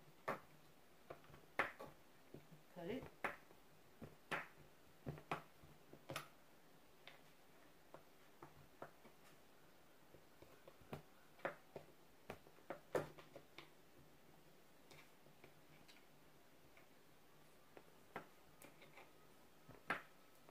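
A kitchen knife cutting through a block of cheese and knocking on a cutting board. It makes irregular sharp taps, a few a second in flurries, with quiet gaps between them.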